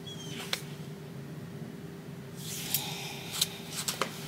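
Quiet handling noise: a few sharp clicks about half a second in, then a longer rustle with clicks in the second half, over a steady low hum.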